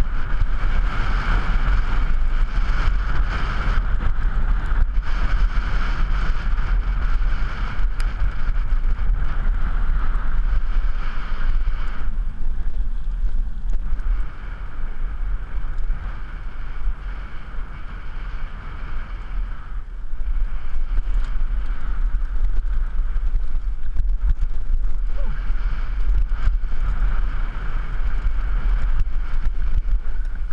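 Wind rushing over a helmet camera's microphone as a downhill mountain bike rolls fast down a dirt track, with tyre noise on loose dirt and occasional knocks over bumps. It drops for several seconds in the middle as the bike slows, then rises again.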